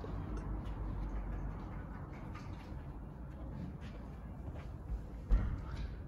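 Low, steady rumbling background noise with a single short thump a little over five seconds in.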